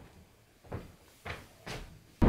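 Three soft swishes of a knit sweater being handled and pulled on over the head at an open clothes closet.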